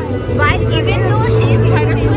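Mostly speech: a woman talking, over a steady low hum and faint background music.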